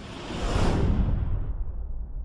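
Cinematic whoosh sound effect with a deep rumble under it, accompanying an animated logo sting; it swells about half a second in, then its high hiss thins out while the rumble carries on.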